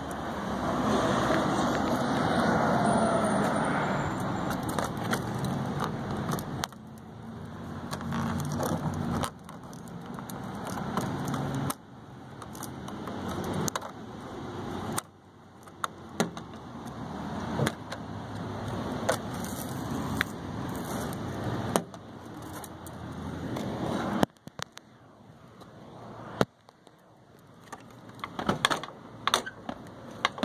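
Outdoor background noise, a steady rushing that repeatedly builds and then cuts off abruptly, with scattered clicks and rattles of handling that come thicker near the end.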